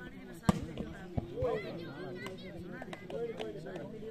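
A volleyball struck hard by a player's hand, a single sharp smack about half a second in, followed by a lighter thump just after a second in, amid players' shouts.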